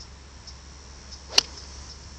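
A 4-iron striking a golf ball off the turf: one sharp crack of impact about a second and a half in.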